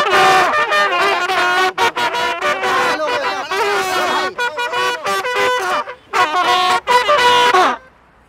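Several trumpets playing loud, held notes together at close range, in choppy phrases with short breaks. The playing cuts out briefly about six seconds in and stops just before the end.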